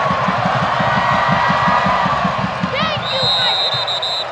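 Football stadium crowd cheering and shouting for a touchdown, over a fast, even low beat. About three seconds in, a steady high-pitched whistle tone starts and holds.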